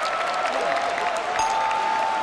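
Background music with a large audience applauding underneath it.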